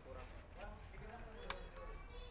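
Quiet background with faint voices and one sharp click about one and a half seconds in. No engine is running: the motorcycle has not started.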